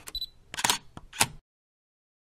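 DSLR camera sounds: a short high autofocus-style beep, then three sharp shutter clicks about half a second apart, cutting off suddenly after about a second and a half.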